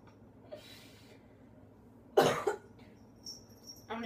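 A woman coughing once, loudly and sharply, about two seconds in, after a faint breath. It comes just after she has drunk a lemon and ginger juice whose aftertaste she calls really bad.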